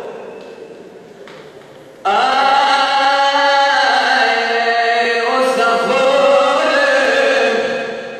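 A man's voice chanting a Pashto noha (mourning lament). A held line trails away over the first two seconds, then about two seconds in he launches into a new long line, holding each note steadily before it fades near the end.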